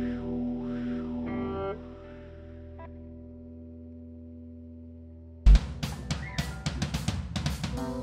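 Instrumental rock cover: an electric guitar chord rings with a pulsing effect, then drops to a quieter held tone. About five and a half seconds in, a loud drum hit starts a fast run of drum kit strikes.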